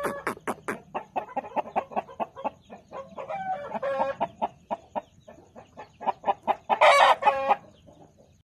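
White Indian-breed rooster clucking in a fast, even run of short clucks, breaking into a louder, drawn-out call about three and a half seconds in and again near the end.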